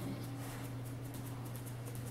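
Quiet room tone with a steady low hum and a few faint soft clicks.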